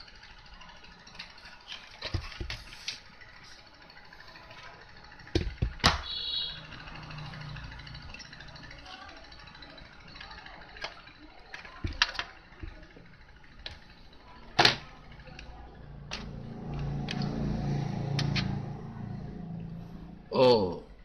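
Scattered clicks and knocks of a receiver's open sheet-metal case and a tool being handled, the loudest a sharp knock about two thirds of the way through. A low rumbling hum rises in the background twice.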